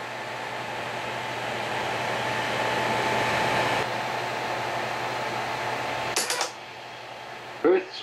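Elmo 35-FT(A) sound filmstrip projector running with its cassette soundtrack started: a rush of noise over a steady low hum, swelling for the first few seconds and then easing. About six seconds in it stops with a quick cluster of clicks as the filmstrip advances to the next frame, leaving only the quieter hum of the cooling fan.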